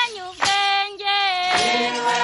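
High female voices singing a song in long held notes that glide between pitches.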